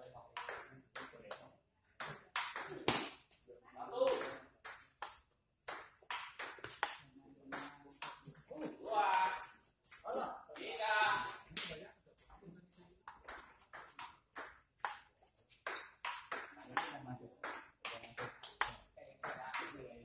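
Table tennis ball clicking sharply off the paddles and the table in quick rallies, a few hits a second, with short pauses between points. People's voices come in between the hits.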